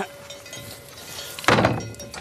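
The steel-framed, wood-panelled tailgate ramp of a cattle trailer is swung up and shut, closing with one loud slam about one and a half seconds in.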